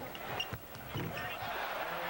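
Basketball game sounds in an arena: sneaker squeaks and a couple of sharp thumps of play under the basket, then crowd noise swelling about a second in.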